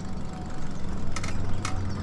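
Lyric Cycles electric bike riding along a wet paved path: a steady low hum with road and wind noise, and two short sharp clicks a little past halfway.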